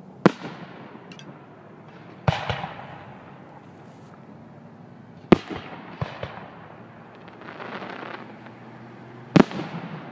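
Aerial fireworks shells bursting: five or six sharp bangs a couple of seconds apart, several trailed by crackling, with a short stretch of crackle between bursts.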